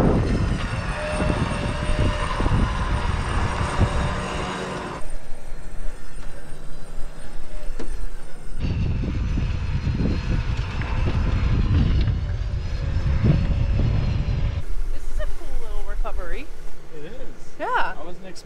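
Vehicle-mounted electric winch running under load as it drags a disabled side-by-side up a sandstone slope: a steady whine over a low rumble, which breaks off and starts again abruptly several times.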